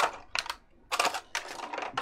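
Clear plastic packaging bags crinkling and crackling as they are handled and pulled apart, in irregular bursts that come thicker from about a second in.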